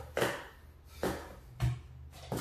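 Three short knocks of hands setting down on the stacking mat, timer pads and plastic stacking cups as the stacker gets set, the first the loudest.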